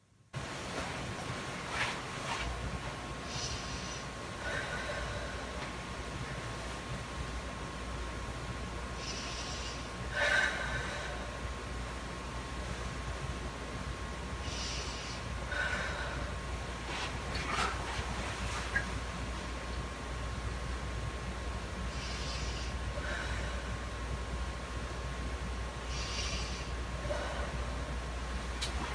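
A person breathing slowly and deeply, in and out about five times at an even pace, as she is asked to for lung auscultation with a stethoscope, over a steady low hum.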